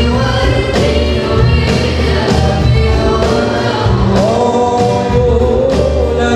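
Live gambus (Malay qasidah) song: a boy vocalist singing a melody with long held, wavering notes, backed by a band of keyboards, guitars and drums playing a steady beat.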